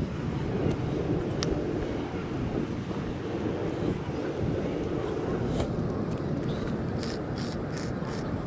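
Steady low rumble of wind buffeting the microphone, with a sharp click about a second and a half in and a few short scrapes near the end.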